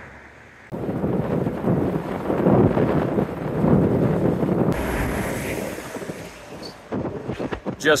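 Freight train of autorack cars passing, a steady rumble that starts about a second in, with wind on the microphone adding a hiss from about halfway.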